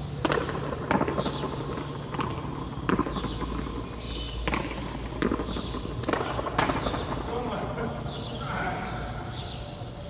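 Hand pelota ball being struck by a bare hand and smacking off the fronton's wall and floor: a string of sharp cracks at irregular intervals, most of them in the first seven seconds.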